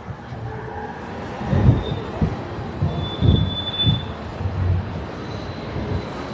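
A passing vehicle rumbling low, with a thin, steady, high squeal: a short one about two seconds in, then a longer one of about a second.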